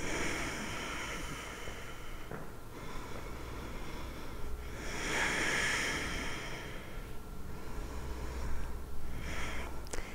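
A woman breathing slowly and deeply in and out while holding a yoga stretch, the breaths swelling and fading, the loudest about five seconds in.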